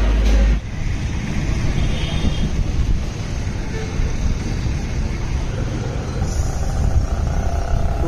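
Steady outdoor street noise: a low, fluctuating rumble of road traffic.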